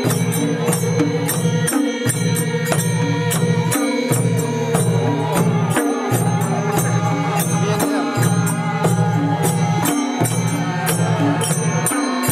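Nepali folk dance music: madal barrel drums hand-beaten in a quick, steady rhythm over a low, chant-like droning line that pauses briefly about every two seconds.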